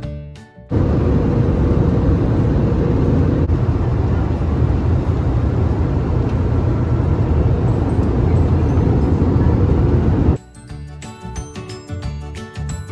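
Steady cabin noise of an airliner in flight, heard from inside the cabin. It cuts in about a second in and stops abruptly near the end, with guitar music before and after.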